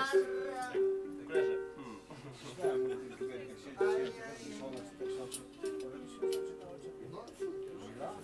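Acoustic ukulele played by fingerpicking, a slow picked pattern with one high note recurring about every half second over changing lower notes.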